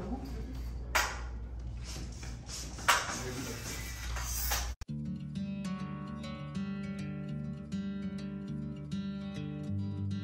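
Room sound with two sharp knocks, then from about halfway a hard cut to background music of plucked guitar.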